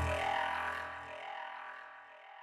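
Electronic music: a sustained synthesizer sound with a deep bass drone, dying away. The bass cuts out a little after a second in and the rest fades.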